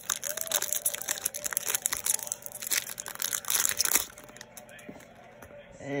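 Foil wrapper of a Bowman Chrome baseball card pack crinkling and crackling as it is torn open by hand, stopping about four seconds in.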